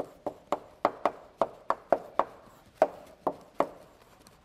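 Chalk tapping and knocking on a blackboard while words are written, a quick, slightly uneven run of about a dozen sharp taps that stops shortly before the end.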